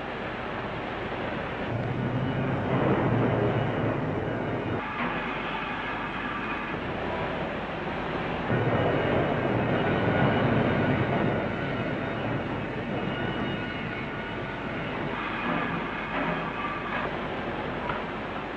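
Steel mill machinery noise: a steady rumble and hiss that swells twice, a few seconds in and again about halfway through.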